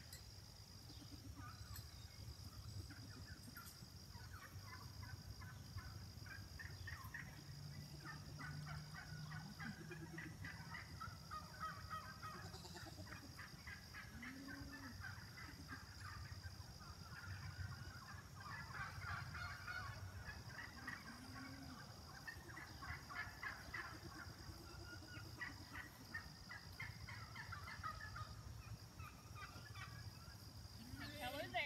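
Faint farm poultry calling in repeated runs of rapid chattering, gobble-like notes, with a steady high-pitched whine behind them.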